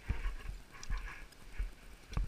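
Skis sliding and scraping over packed snow, in short hissing scrapes, with irregular low thumps and a steady rumble on the moving camera's microphone.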